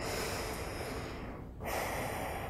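A person breathing slowly and audibly: one long breath fading away, then a second breath starting about a second and a half in.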